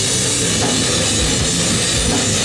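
Grindcore band playing live at full volume: fast, dense drumming with heavy distorted guitars, one unbroken wall of sound, recorded from within the crowd.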